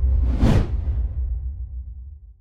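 Logo-sting sound effect: a single whoosh that rises and falls, peaking about half a second in, over a deep low drone and the last faint notes of ambient music, all fading out toward the end.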